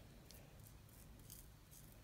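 Near silence, broken by a few faint, brief scratchy rustles: hands smoothing gel into short, tightly curled natural hair.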